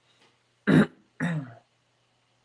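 A man clearing his throat: two short bursts about half a second apart, the first the louder.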